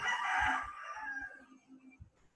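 A rooster crowing, one crow lasting about a second and a half and trailing off.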